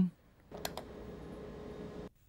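Two quick clicks about half a second in, then a faint steady hum.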